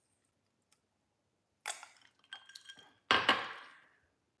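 A drinking glass clinking against a hard surface, then set down with a loud knock and a short ring about three seconds in.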